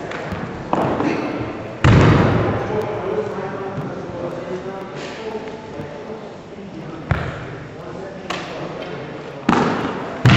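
About six sudden thuds of bodies being thrown and slammed onto a padded gym mat during martial-arts takedowns, each dying away in a large echoing hall. The loudest comes about two seconds in, and there is talking between the impacts.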